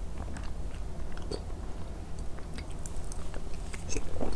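Close-miked chewing of a spoonful of rice and stewed vegetables, heard as scattered soft clicks and smacks of the mouth.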